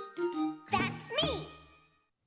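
Closing bars of a children's TV theme song: a jingling, bell-like melody with a child's voice gliding up and down about a second in, then fading out near the end.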